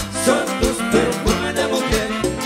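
A live cumbia band playing an instrumental passage with a steady, evenly spaced percussion beat under pitched instruments.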